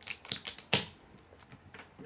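Small plastic Lego bricks clicking as they are pressed together and handled on a wooden tabletop: a quick run of clicks in the first second, the loudest about three-quarters of a second in, then fainter handling.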